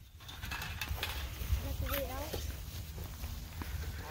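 Faint, indistinct voices of a group walking outdoors over a steady low rumble on the microphone.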